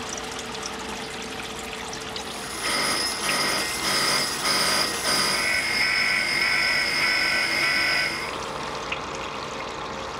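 Water-cooled jade-carving grinder running, its spinning bit cutting into jade with a high-pitched whine that starts about two and a half seconds in, breaks off and comes back a few times, and stops about eight seconds in, over a steady running hum.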